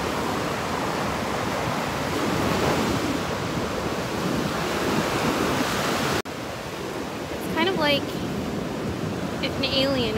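Ocean surf breaking and washing up a sandy beach, a steady wash of noise. About six seconds in it drops abruptly to a quieter level of surf.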